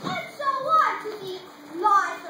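Children's voices on stage, short indistinct spoken phrases with a louder one near the end.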